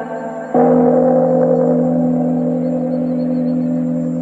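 A gong struck once about half a second in, its tone ringing on steadily over a Buddhist chant or music track.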